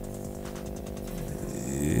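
A steady buzzing drone with many overtones on the video-call audio: the unwanted "vibrating sound" coming through the call.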